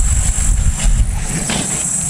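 Wind rumbling and buffeting on an action-camera microphone, with a steady high-pitched chirring of insects running underneath.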